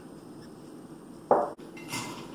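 Glassware clinking on a table as drinks are handled: quiet handling, then one sharp clink a little past the middle, with a brief hiss near the end.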